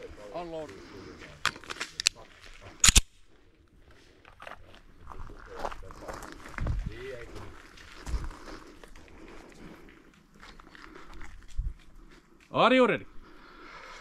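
A single loud, sharp gunshot about three seconds in, with a few lighter clicks just before it. Footsteps on gravel and quiet voices fill the rest.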